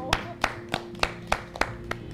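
Hands clapping in an even beat, about three to four claps a second, over soft background music.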